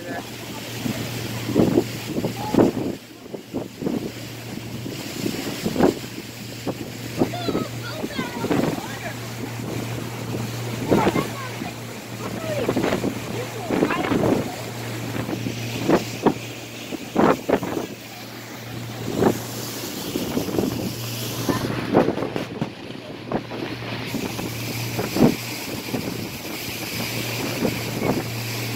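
Small passenger boat's engine running with a steady hum while wind buffets the microphone in frequent gusts and water rushes past the hull.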